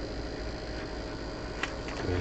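Steady hiss and hum from a Yaesu FT-101 transceiver's receiver audio with a faint steady tone, as it picks up a signal generator carrier during front-end alignment, while trimmer TC-14 is peaked for maximum audio. Two faint clicks come near the end.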